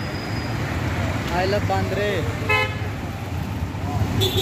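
Road traffic at a city junction, with engines running, and a short vehicle horn toot about two and a half seconds in.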